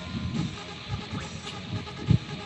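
Background workout music playing, with dull low thuds of feet landing on a rubber gym floor during jumping squats.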